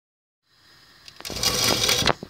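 Rustling and scraping handling noise from the recording phone being positioned, starting faint and turning loud about a second in, with a few sharp clicks.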